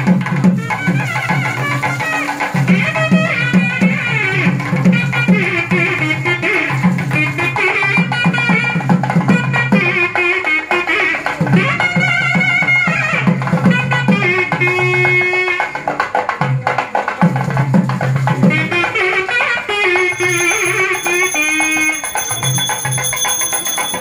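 Temple melam band music: a reed pipe playing a wavering melody over loud, fast drumming. About 20 seconds in, a bell starts ringing steadily alongside it.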